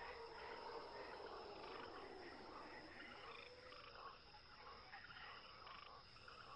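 Faint jungle ambience: animal calls and croaking frogs, with a few soft gliding tones.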